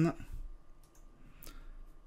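A single computer mouse click about one and a half seconds in, over a faint quiet background.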